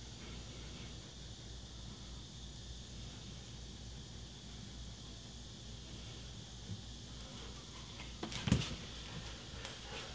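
Quiet room tone with a faint steady low hum. About eight and a half seconds in there is one brief, soft handling noise as the pistol and swabs are moved on a cloth towel.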